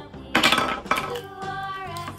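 Hard plastic clicking and clattering, loudest about a third of a second in, as a small blue plastic toy case is pulled open, over steady background music.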